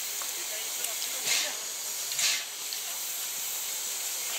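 ČSD class 555.0 steam locomotive standing, its steam hissing steadily, with two louder puffs of steam a second apart.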